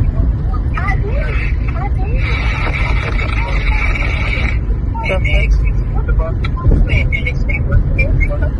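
Low rumble inside a car's cabin, with muffled voices that cannot be made out. From about two seconds in, a louder held sound lasts for about two seconds.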